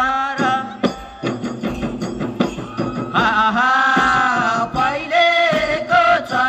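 Magar Kaura folk music: drum strokes in the first half, then a voice singing a long held line with other voices about halfway through.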